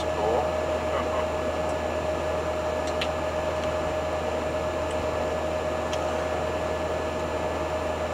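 Steady cabin drone of a 1985 Hobby 600 Fiat Ducato motorhome cruising at about 71 km/h: constant engine and road noise with a steady whine over it, heard from inside the cab.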